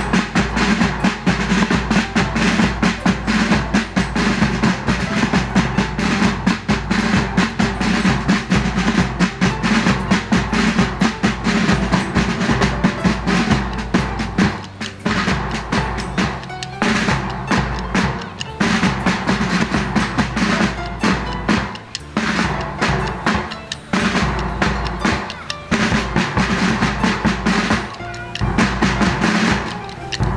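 Police band's side drums and bass drum playing a rolling drum display, rapid snare-style strokes over bass drum beats. The playing stops short several times in the second half and picks up again.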